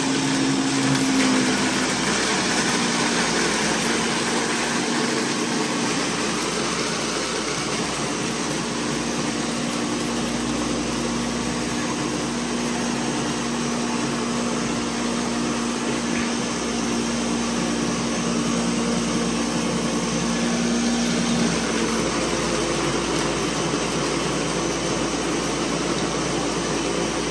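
Ninja countertop blender running steadily, grinding dog food, rice, pumpkin and milk replacer into a thick puppy mush. Its motor hum shifts up in pitch about three-quarters of the way through.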